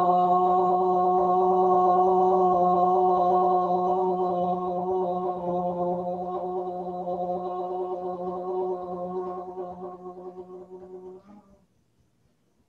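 A woman's voice holding one long 'ah' on a single steady pitch while she taps her chest with her fists. The tone grows gradually fainter as her breath runs out and stops about eleven seconds in.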